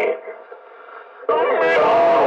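A man's voice ends a word. Then, about a second and a half in, he starts a loud, long yell held at a steady pitch.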